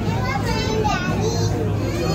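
Children's high voices talking and calling out, over a steady low hum.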